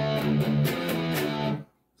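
Electric guitar in drop tuning playing a short phrase of ringing notes and chords with several changes, then muted so that it cuts off suddenly about a second and a half in.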